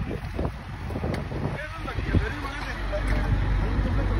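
Steady low engine rumble, typical of a diesel truck idling, with wind buffeting the microphone and faint voices in the background.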